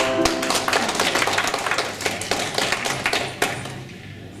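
The last chord of the ukuleles and banjo ukulele rings out, then audience applause follows, with scattered claps fading away.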